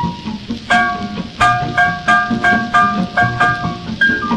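1943 French swing-orchestra recording played from a 78 rpm disc. About a second in, it moves into a run of repeated high chords, about three a second, over a steady low rhythmic accompaniment.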